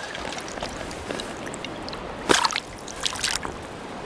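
Shallow river water sloshing and trickling close to the microphone as a caught rainbow trout is lowered back into the river for release. Two short splashes come about two and three seconds in.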